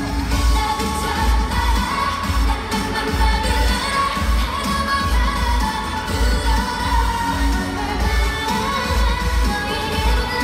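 K-pop girl group performing through an arena PA: female voices singing over a pop backing track with a heavy, regular bass beat.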